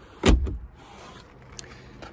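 The hinged plastic lid of a Volkswagen Sharan's overhead headlining storage compartment is pushed shut with one sharp clunk about a quarter second in, followed by a faint low hum.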